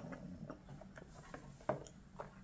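A few faint, irregular little clicks and ticks from a small child sipping from a drink box through a straw, the loudest about three-quarters of the way through.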